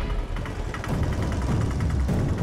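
Auto-rickshaw engine idling, a steady low rumble.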